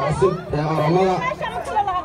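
Speech only: a man talking into a handheld microphone, with other voices chattering around him.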